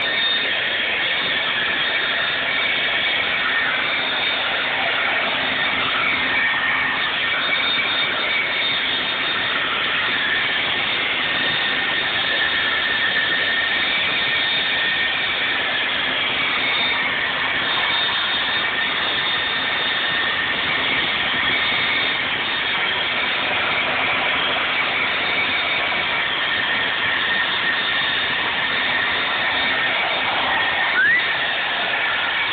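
Steady, loud whirring of a motor-driven appliance with a constant whine. It is unchanging throughout.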